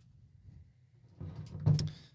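Near silence, then a few light clicks and knocks near the end as a deer antler rack is picked up off a wooden table.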